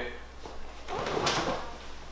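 A short rustle and creak of a leather armchair as someone gets up out of it, about a second in.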